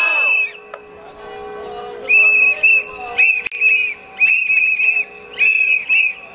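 A shrill whistle blown in short, rhythmic blasts at a protest, starting about two seconds in.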